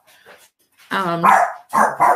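A dog barking, twice: one bark about a second in and a shorter one near the end.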